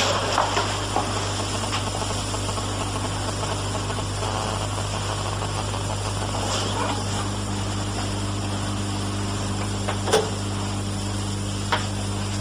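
Steady low hum and hiss of an old tape recording's background noise, with one sharp click about ten seconds in.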